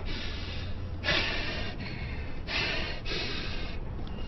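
A person breathing heavily, four loud breaths about a second apart, over a low steady hum.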